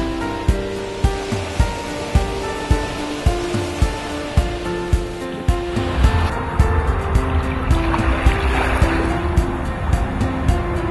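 Background music with a steady beat, about two beats a second, over sustained melodic notes. A rushing noise swells in beneath it from about six seconds in.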